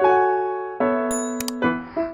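Background music played on a piano-like keyboard, single notes and chords struck and left to ring. Two short, sharp clicks come about a second in.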